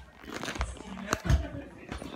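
Indistinct voices mixed with rustling and sharp clicks from a phone being handled and moved.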